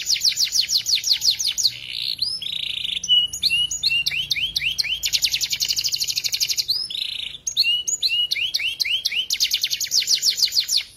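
Domestic canary singing a long, unbroken song. Fast runs of repeated downward-sweeping notes alternate with buzzy rolls and slurred whistles, and there is a dense rapid trill in the middle.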